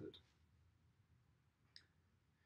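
Near silence: room tone, with the tail of a spoken word at the very start and one faint short click near the end.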